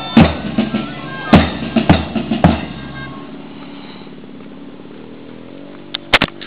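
School drum band playing: bass drum strikes about half a second apart under a steady melody, stopping about three seconds in. A steady engine drone is left after it.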